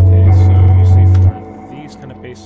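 Lo-fi beat playing back from the software: a loud, deep synth bass holding a low note under a sampled melody loop. The bass cuts off about a second and a half in, and the melody carries on more quietly.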